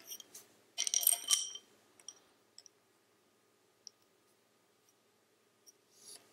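Bamboo double-pointed knitting needles and a yarn needle clicking and knocking together in a short cluster about a second in, as stitches are slipped onto the yarn needle, followed by a few faint single ticks.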